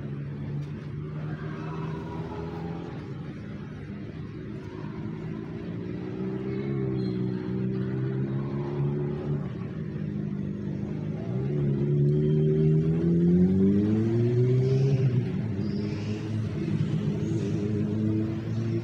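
A motor vehicle engine running steadily nearby, then rising in pitch and getting louder about eleven to fourteen seconds in as it accelerates.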